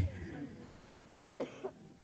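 A man's voice trails off, then a short cough comes about one and a half seconds in, in two quick parts, amid near silence.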